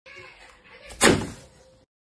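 A single sharp thud about a second in, fading quickly: a plastic juice bottle dropped into a plastic-lined wastebasket.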